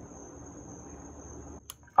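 Faint outdoor night ambience with a thin, steady high-pitched insect drone. Near the end the background drops away briefly and there is a single short click.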